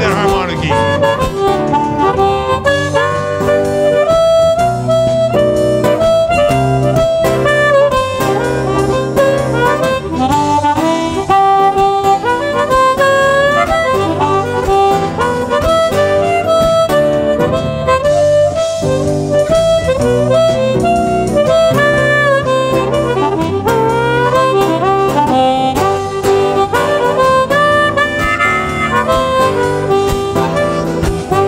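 Harmonica solo played into a microphone over a live band of acoustic and electric guitars, bass and drums, in a slow blues ballad.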